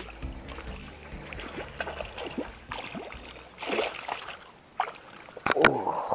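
Water splashing in shallow muddy water at the bank as a hooked snakehead (haruan) thrashes, in several short splashes, with a couple of sharp clicks near the end.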